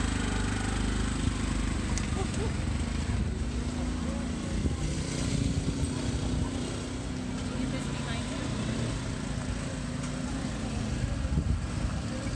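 Motorcycle engine of a three-wheeled mototaxi running as it pulls away and drives off down the street.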